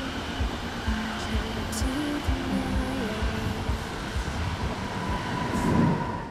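A red electric commuter train moving through the station, its running noise joined by a steady high whine over the last couple of seconds. Electronic music with stepping notes and a low beat plays quietly underneath.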